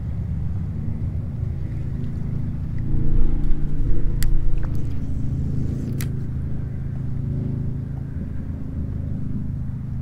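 Low, steady rumble of wind buffeting the camera microphone on an open kayak, swelling briefly a few seconds in, with a couple of light clicks.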